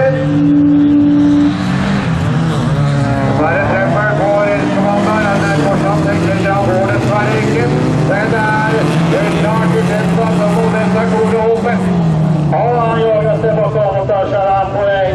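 Several bilcross race cars' engines revving hard together, their pitches rising and falling as the cars shift gears and pass by.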